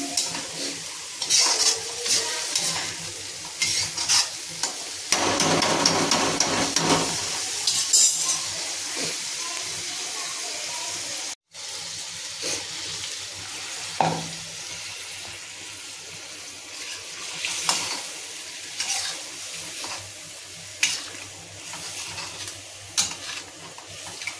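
A perforated steel ladle stirring and scraping pea-and-masala gravy in a hot iron kadhai, clicking against the pan over a steady sizzle. Partway through, water is poured into the pan, and the thinner gravy goes on sizzling more quietly, with an occasional knock of the ladle.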